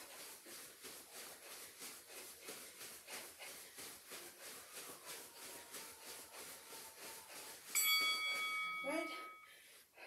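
Soft, regular footfalls of jogging in place on carpet, about three to four a second. Near the end a workout interval timer sounds one long electronic beep of about two seconds, the loudest sound here, marking the end of the interval.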